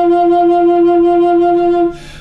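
Flute holding one long, steady low note that stops just before the end.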